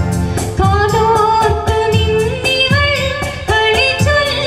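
A woman singing a melodic song into a microphone, amplified over a karaoke-style backing track with a steady beat.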